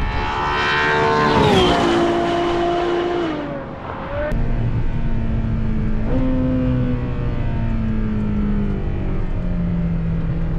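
A Ferrari passing at speed on a race track: its engine note drops sharply as it goes by about a second and a half in, holds, then fades. Then the Ferrari's engine is heard from inside the car, running steadily; its pitch jumps up about six seconds in and then slides slowly down as the car slows for a corner.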